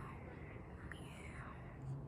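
A child whispering faintly under his breath, a soft breathy murmur without clear words.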